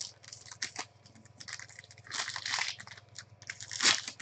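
Plastic and foil wrapping of a trading-card pack crinkling and tearing in the hands, in an irregular run of crackles, with a loud burst just before the end.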